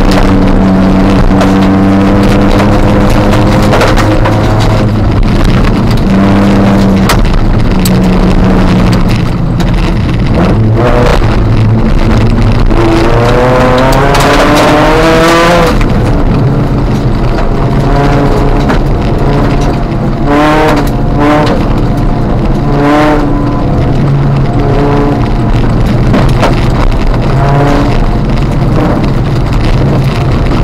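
In-car sound of a Ford Fiesta ST150 rally car's 2.0-litre four-cylinder engine driven hard on a wet gravel stage. The revs hold fairly steady at first, climb in one long rise that cuts off sharply about halfway, then come in several short bursts, with sharp clicks scattered throughout.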